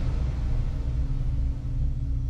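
Low, steady rumbling drone with a faint hiss over it: the sustained tail of an intro sound effect under a title card, following a whoosh.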